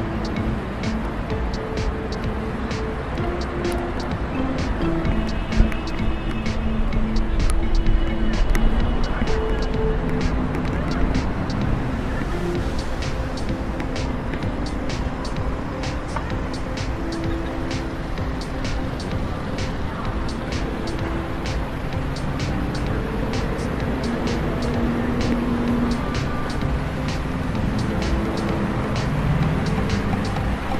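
Music with a melody of held notes over a steady low rumble of city traffic; from about twelve seconds in, a quick regular ticking runs through it at about two ticks a second.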